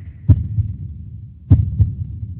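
Three dull knocks, each with a sharp click on top: one about a quarter second in, then a quick pair near the end.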